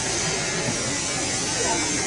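A loud, steady hiss, with faint voices in the background.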